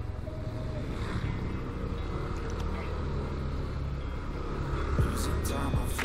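Yamaha Aerox 155 scooter's single-cylinder engine running steadily at low speed, a constant low hum.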